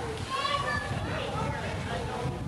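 Indistinct chatter of people in a large dining room, with a fairly high voice standing out, over a steady low rumble on the microphone.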